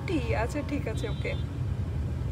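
Steady low rumble of a moving car heard from inside the cabin, with a voice speaking briefly in the first half second.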